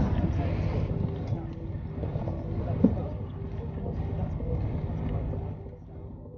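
Steady low mechanical hum under faint murmuring voices, with a short rising sound a little under three seconds in.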